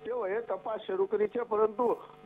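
Speech only: continuous talking with no other sound standing out.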